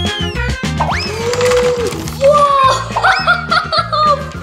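Bouncy background music with a steady bass line, overlaid with rising whistle-like cartoon sound effects; a child's voice comes in about halfway through.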